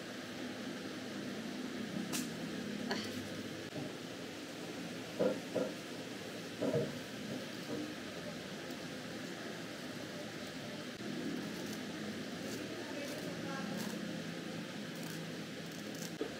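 Scissors cutting a snake plant's thick leaves: a few short snips and clicks, scattered and irregular, over a steady low background hum.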